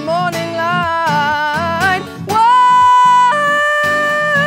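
A woman singing over an acoustic guitar. Her voice moves through a short melody, then holds one long note that steps up in pitch near the end.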